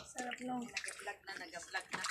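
Shallow pool water sloshing and splashing softly as bare feet wade through it, with faint voices.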